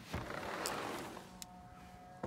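A sliding glass patio door rolling open with a rushing, scraping sound for about a second, followed by a light click and a faint steady hum.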